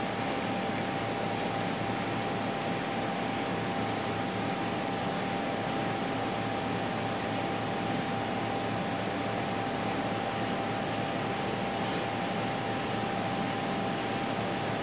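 Steady room noise of a running ventilation unit: an even hiss with a constant faint high whine running through it.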